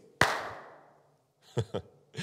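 A single sharp hand clap that rings out in the room for about a second, followed by a brief soft chuckle near the end.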